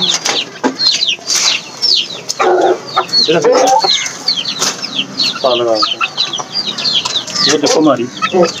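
Chickens in a coop: a steady stream of short, high, falling peeps, several a second, with a few lower clucking calls among them.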